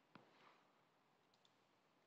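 Near silence, with one faint computer mouse click just after the start and two fainter ticks about one and a half seconds in.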